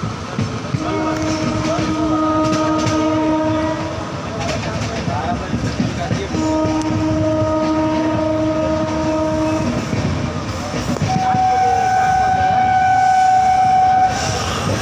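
Locomotive horn sounding three long blasts of about three seconds each: the first two on the same lower chord, the third on a higher single note near the end. Underneath, the coach's wheels rumble and clatter over the rail joints.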